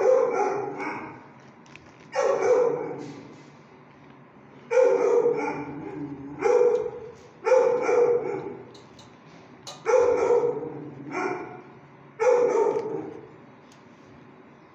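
A dog barking: about eight loud, single barks spaced one to two and a half seconds apart, each ringing on briefly off the hard walls of a shelter kennel.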